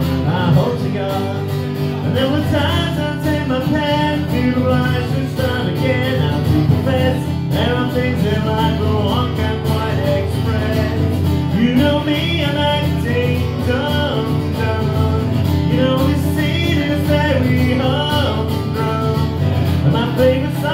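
Live acoustic guitar strummed steadily in chords, with a man singing into the microphone at times over it.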